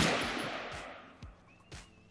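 A single shot from a Canik TP9SA 9mm pistol right at the start, its report ringing off the range's concrete-block walls and dying away over about a second.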